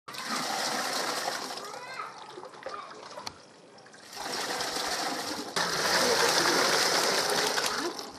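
Milky liquid pouring and splashing, first through a sieve into a plastic bucket, with a quieter gap a few seconds in. From about the middle it turns suddenly louder as liquid is poured from a bucket into a large metal pot.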